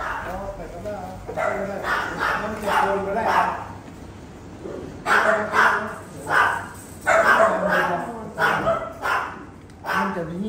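Dogs barking in a clinic kennel ward, a run of short barks that comes in two bunches, with people talking alongside.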